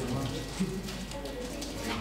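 Several people talking at once, with music underneath.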